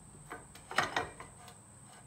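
A few light metal clicks and knocks about half a second to a second in, as a torque converter pulley is handled against the engine and its shaft during a test fit.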